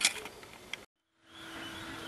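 A sharp click and a few smaller clicks of hands and a tool on the printer frame, then a moment of dead silence from an edit, then a faint steady hum with a low tone.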